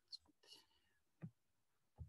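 Near silence: a pause in a man's recorded speech, with a few faint, brief sounds in it.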